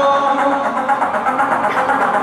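Live pop band music played over an arena sound system, with a fast, even ticking pulse in the treble over dense sustained tones.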